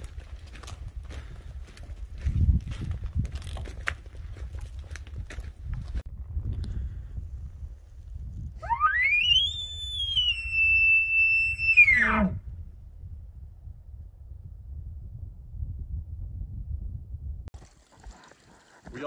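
Elk bugle call blown by a hunter through a bugle tube, about nine seconds in: one long note that climbs steeply to a high whistle, holds there for a couple of seconds, then drops sharply to a low grunting finish.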